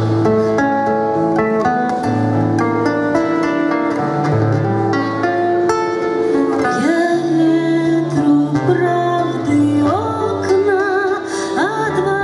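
Fingerpicked nylon-string classical guitar playing a song accompaniment. A woman's voice comes in singing about halfway through, with vibrato on held notes.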